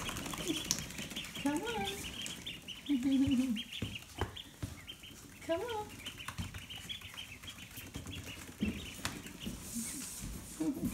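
A group of ducklings peeping continuously, a dense run of short, high chirps.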